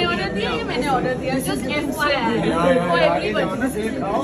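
Several people talking over one another: lively, overlapping conversational chatter.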